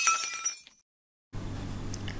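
Glass-shattering sound effect: a sudden crash with ringing shards that fades out within the first second. Then a brief dead silence, and a low steady hum of room tone comes back.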